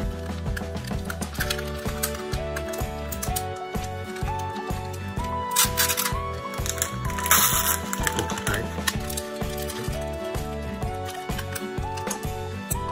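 Background music with a steady beat and a simple stepping melody, with two short noisy bursts in the middle.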